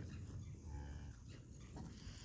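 A cow in a small herd of beef cattle lows faintly once, a short low call a little under a second in, over a low steady rumble.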